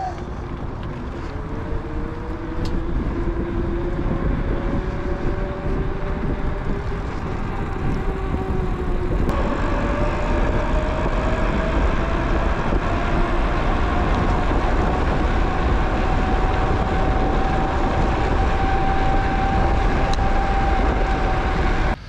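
Bafang BBSHD 1000 W mid-drive e-bike motor whining under power, its pitch climbing steadily as the bike gathers speed. About nine seconds in the pitch steps up and then keeps rising. Heavy wind rumble on the microphone from riding speed runs underneath.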